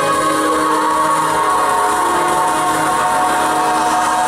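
Large youth choir singing long, held chords, the voices shifting to new notes a few times.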